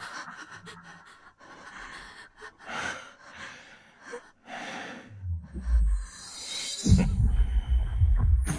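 Tense, audible breathing and gasps in short bursts. A deep rumble builds, and then, about a second before the end, a sudden loud sound, heavy in the bass, cuts in.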